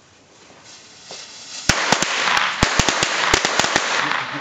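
A string of firecrackers going off: after a soft hiss, a loud rapid crackle of sharp pops starts about two seconds in and keeps going.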